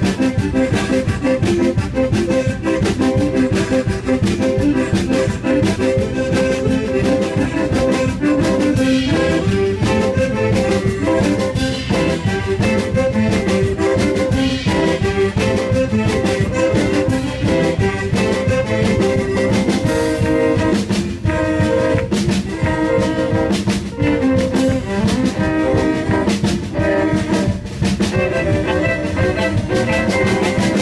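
Live band playing an instrumental passage with a steady beat: tenor saxophone, fiddle, accordion, archtop guitar, bass guitar and drums together.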